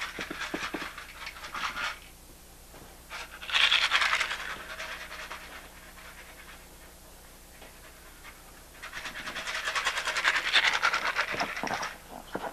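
Three bursts of rasping, breathy noise, each one to three seconds long, separated by quieter gaps; the second starts suddenly about three seconds in.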